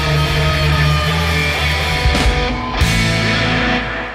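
Live rock band playing, electric guitar over drums and a heavy low end. The low notes cut off shortly before the end as the song finishes.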